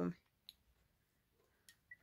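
A few faint, sharp clicks as a glass perfume bottle is handled: one about half a second in and a couple more near the end, with no spray heard.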